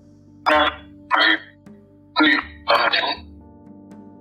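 An EVP (metafonia) voice recording played over soft ambient music: four short, loud, voice-like bursts in the first three seconds, captioned as the phrase 'Io sempre ti penso' ('I always think of you').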